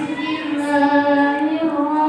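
A boy chanting Qur'anic recitation (tilawah) in the melodic competition style, holding one long drawn-out note with a slight waver in pitch.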